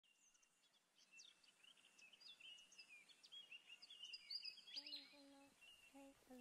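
Faint birdsong-like chirps and quick whistled glides. About three-quarters of the way in, a soft hummed melody of steady held notes joins them.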